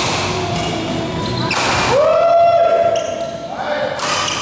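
Badminton rally in a large hall: racket hits on the shuttlecock and players' footfalls on the court. About a second and a half in there is a short rushing sound, then a steady squeal held for about a second and a half.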